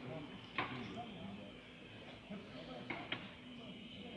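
Indistinct voices of people talking in the background, with a sharp click about half a second in and two more about three seconds in.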